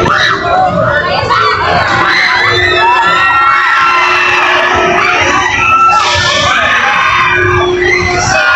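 Many riders on a spinning thrill ride screaming and shouting together, their voices overlapping, over a steady hum.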